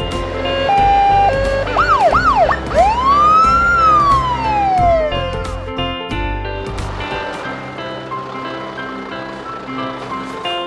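Cartoon police siren sound effect over background music: first a short two-note tone, then two quick rising-and-falling yelps, then one long wail that rises and slowly falls away by about five seconds in.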